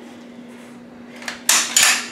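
Bolt of a Finnish M91 Mosin-Nagant rifle being worked by hand: a faint click, then two sharp metal-on-metal clacks close together near the end.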